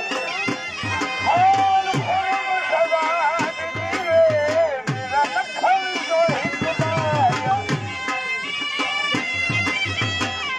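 Punjabi dhol drums beating a luddi rhythm under a loud, wavering wind-instrument melody that bends in pitch, live folk dance music.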